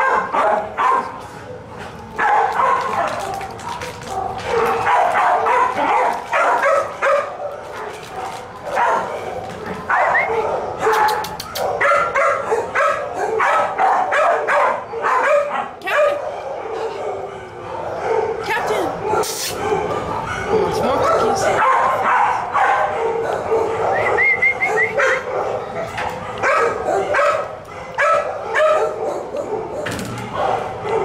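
Many dogs barking and yipping together without a break, the continuous din of a shelter's kennel block.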